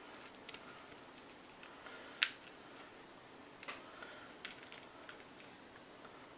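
Small plastic clicks and light rustling as an action figure is handled by hand and its accessories are worked off, with one sharp click a little over two seconds in and a few lighter ticks later.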